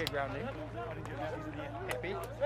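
Many voices of players and spectators calling out at once, overlapping and fairly faint, over a steady low hum from the pitch-side field microphone.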